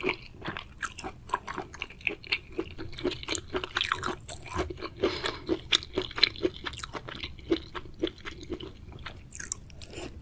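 Close-miked chewing of spicy, saucy food: a dense run of wet, crunchy crackles and smacks several times a second.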